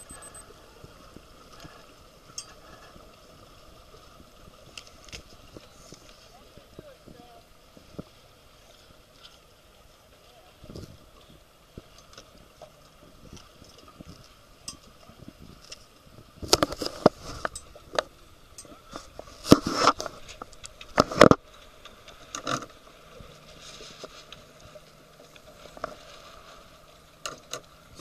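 Steady wind and water noise on a small handheld camcorder's microphone aboard a boat, with a cluster of loud knocks about two thirds of the way through.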